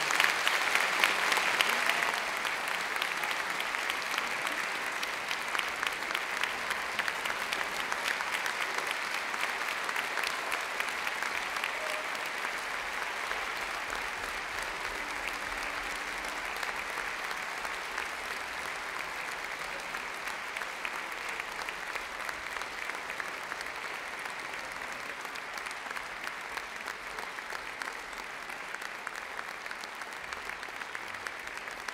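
Audience applauding, loudest in the first couple of seconds, then steady and slowly thinning.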